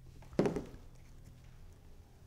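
Plastic glue bottle set down on a cutting mat with a single light knock about half a second in, then a faint steady hum.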